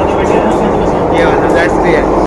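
Delhi Metro train running, heard from inside the carriage as a steady, even noise, with a few voices over it.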